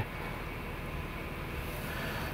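2002 Nissan Frontier's 3.3-litre V6 engine idling steadily, a quiet low running sound.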